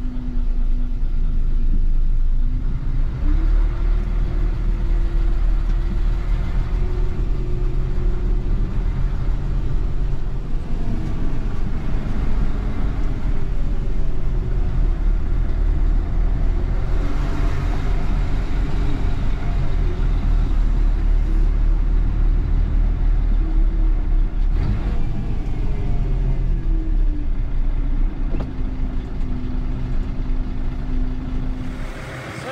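Diesel engine of a grab lorry heard from inside the cab: idling, then rising in pitch about three seconds in as the lorry pulls away, running steadily while it drives, and dropping back to idle near the end.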